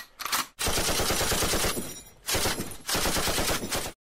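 Automatic gunfire in three long bursts of rapid shots, the first beginning about half a second in and lasting about a second, after a few short shots at the start.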